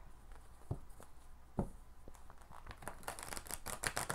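Large tarot cards being handled and shuffled: two soft knocks, then from near the three-second mark a quick run of card clicks and flicks as the deck is split and riffled.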